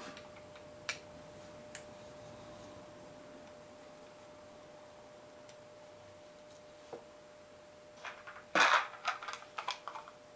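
Screwdriver working on a Ford F100 carburetor body: a few faint metal clicks, then a quick run of louder metallic clicks and rattles near the end.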